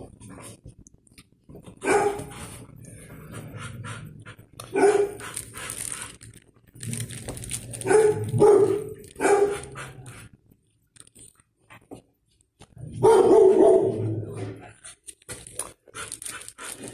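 A dog barking in separate short bursts: single barks about two and five seconds in, three quick barks in a row a little past the middle, and a longer run of barking near the end.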